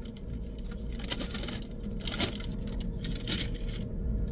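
Paper fast-food bag crinkling and rustling on and off as a hand digs food out of it, over the steady hum of the car's air conditioning.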